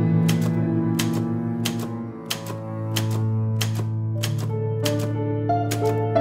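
Typewriter keys clacking in an uneven run of two to three strikes a second, over background music with sustained notes.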